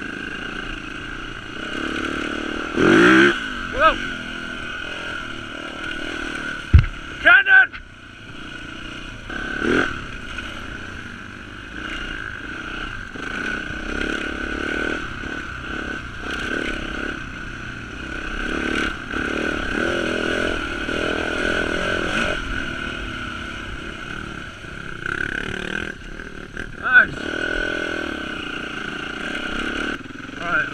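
Dirt bike engine running while riding, heard close up from the bike, with the engine note rising sharply as the throttle opens about three seconds in, again near eight seconds and near the end. A sharp click comes just before the second rev.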